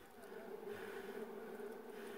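Honeybees buzzing at a wild nest that is being opened for honey, one of them close by with a steady, even hum that swells about half a second in. The bees are agitated and defensive.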